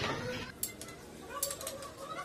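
Light metallic clicks and clinks of hand tools or parts being picked up: one about half a second in, then a quick run of several about a second and a half in.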